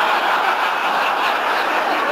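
Live audience laughing steadily after a punchline.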